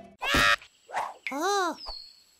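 A cartoon chick character's wordless squawk, a short call that rises and falls in pitch near the end, following a brief noisy sound-effect burst near the start.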